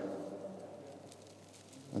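The echo of a voice dying away in a large reverberant hall, fading into quiet room tone with a few faint light ticks.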